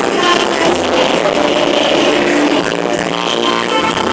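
A live gospel band playing on stage, with guitars, drums and keyboards, picked up from the crowd as one continuous wash of music.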